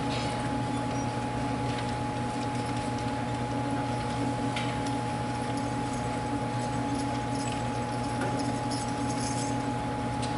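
Steady low electrical hum and room noise in a hall, with a thin high tone held over it and a few faint clicks or rustles. No music is playing yet.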